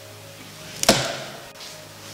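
A door shutting with a single sharp bang about a second in, over faint background music.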